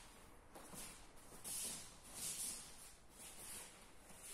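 Faint rustling and shuffling: the cotton gi of two people and their bare feet moving on foam mats as they rise from a kneel to standing. It comes as several short, soft hissy bursts.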